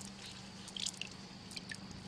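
A wet hemp face cloth being wrung out by hand: faint squelches and a few small drips of water.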